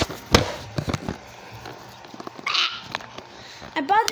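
Handling noise from a tablet being moved about: a sharp knock shortly after the start, then a few lighter clicks and rustles. A short breathy hiss comes about two and a half seconds in.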